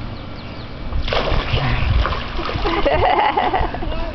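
A toddler jumping from the edge into a swimming pool into an adult's arms: a sudden splash about a second in, followed by a couple of seconds of churning water.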